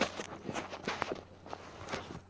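A run of irregular knocks and scuffs, about seven in two seconds, the loudest right at the start and just before the end.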